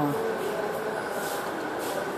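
Steady background noise, an even rumble and hiss with no distinct events, in a pause between spoken sentences.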